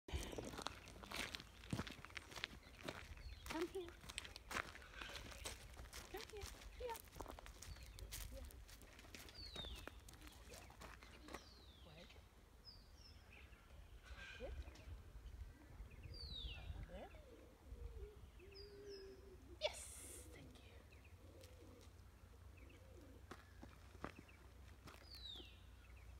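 Quiet outdoor ambience with birds calling: short, high, downward-sliding notes repeated every couple of seconds from about ten seconds in. Scattered soft clicks and knocks in the first half.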